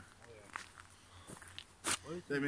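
Soft footsteps during a pause in talk, with a brief faint voice about half a second in and a short sharp noise just before the end.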